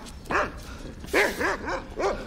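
Large dog barking repeatedly, a single bark and then a quick run of three barks.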